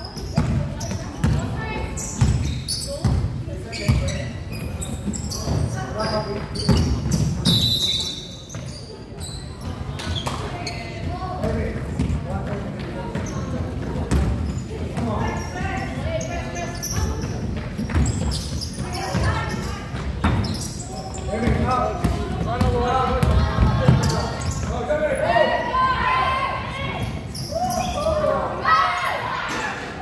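Basketball bouncing on a wooden gym floor, sharp repeated impacts, with indistinct voices of players and onlookers echoing in a large sports hall.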